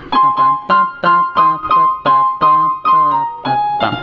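Electronic keyboard with a piano sound playing a quick single-line melody, about three notes a second, that keeps returning to the same high note.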